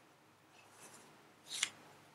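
Pen scratching across paper as a line is drawn: two short, faint strokes, the second louder, about a second and a half in.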